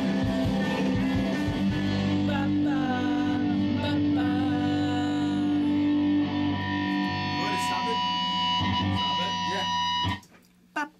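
Rock song with electric guitar chords and a singing voice, held steadily and then stopping abruptly at the very end.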